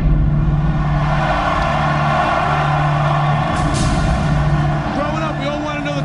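A large crowd cheering in an arena, a dense steady roar of many voices, with a low pulsing tone under it; single shouting voices stand out near the end.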